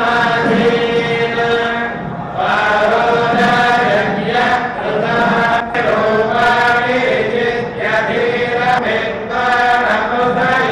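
Several male voices chanting hymns in unison, in long held phrases broken by short pauses every couple of seconds.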